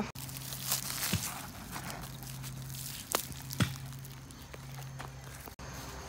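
Faint rustling and crunching of dry vegetation, with a few sharp clicks, over a low steady hum.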